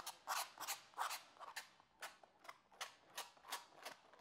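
Metal palette knife scraping and spreading thick acrylic paint across a canvas, white being worked into blue wet on wet. The short strokes come about three to four a second and grow fainter in the second half.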